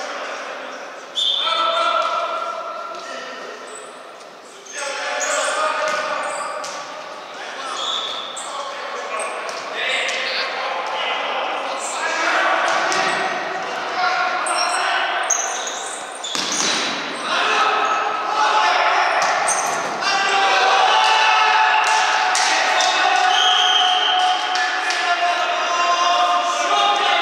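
Futsal ball being kicked and bouncing on a wooden sports-hall floor, many sharp hits one after another, with players' shouts echoing around the hall.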